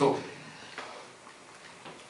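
A man's voice says one word through a handheld microphone, then a pause of quiet room noise with a few faint clicks.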